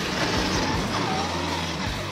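Electric motor and gear whine of a Redcat RC crawler truck climbing a muddy bank, dipping and rising in pitch about a second in as the throttle changes, with rock music underneath.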